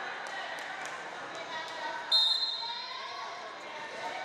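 A ball bouncing a few times on the hardwood gym floor, then a short blast of the referee's whistle about two seconds in, signalling the next serve.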